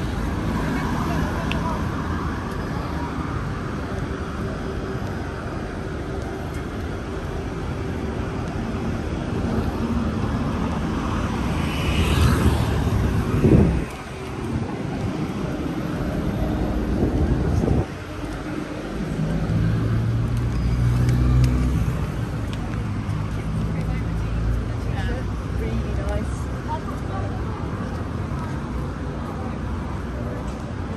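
Busy city street: road traffic running past with indistinct voices of people nearby. The loudest moment is a vehicle going by about halfway through, and a heavier engine holds a steady low note a few seconds later.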